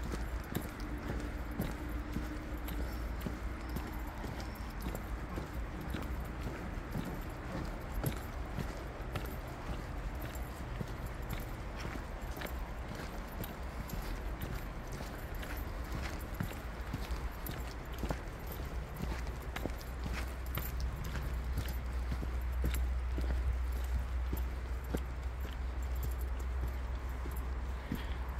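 Footsteps crunching along a dirt forest trail at a steady walking pace, over a low steady rumble on the microphone that grows a little louder in the second half.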